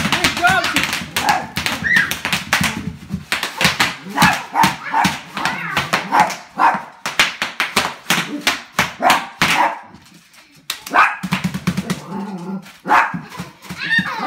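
Bubble wrap popping and crackling in dense, irregular snaps as a toddler steps on it, with a small dog barking and yipping.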